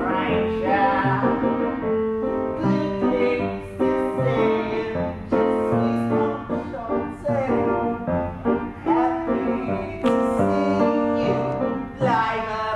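Piano accompaniment of a show tune with a solo voice singing over it, continuous throughout.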